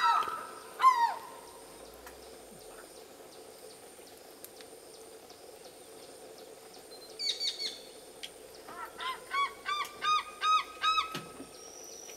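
African fish eagle calling: a loud call with falling notes fades out in the first second. After a pause come a brief burst of high short notes, then a run of about nine short calls at about four a second.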